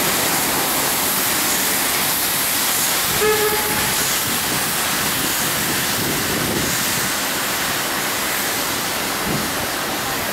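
Steady street-traffic noise with a dense hiss. A short vehicle horn toot sounds about three seconds in.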